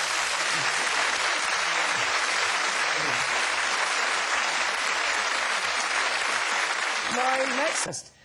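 Studio audience applauding steadily, with a voice briefly heard over it near the end; the applause cuts off suddenly.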